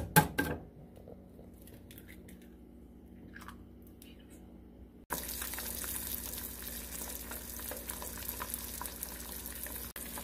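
A few sharp knocks as an egg is cracked against a nonstick frying pan over melting butter, then faint light ticks. About five seconds in, the steady, even sizzle of an egg frying in butter starts abruptly and carries on.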